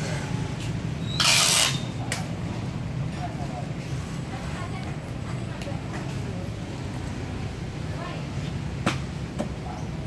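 Steady low background hum, with one short loud hiss about a second in and a single sharp click near the end.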